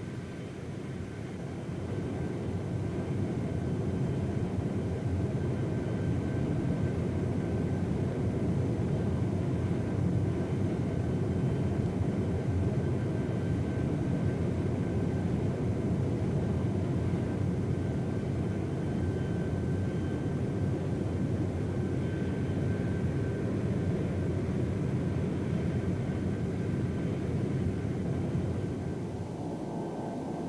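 Lockheed L-1011 TriStar jet airliner heard from the flight deck on the runway: a steady rumble with a faint high whine above it. It builds over the first couple of seconds, then holds level.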